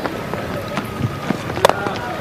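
Stadium crowd noise, with the sharp crack of a cricket bat striking the ball as it is driven for four.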